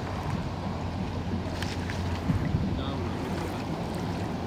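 Wind on the microphone over a steady low outdoor rumble, with faint voices in the background.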